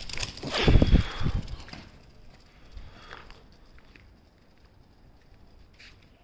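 A brief burst of rustling with low thumps about a second in, then a quiet outdoor background with a few faint ticks.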